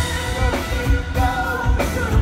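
A woman singing with a live band, her voice held in long bending notes over the full band.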